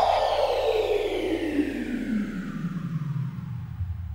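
Synthesized downward sweep effect from a DJ dance remix: a falling pitch glide that sinks slowly and fades out over a faint low hum, with the beat gone.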